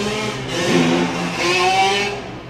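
A motor vehicle driving past in the street, its engine and tyre noise swelling to its loudest near the end.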